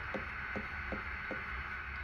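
Quiet room tone: a steady low hum with four faint light ticks, evenly spaced about 0.4 s apart.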